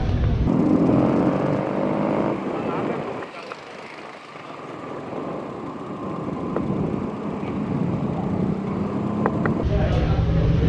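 Street traffic noise from cars and motorbikes, with indistinct voices, growing quieter for a couple of seconds around the middle.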